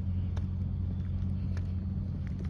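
A parked car's engine idling nearby, a steady low hum.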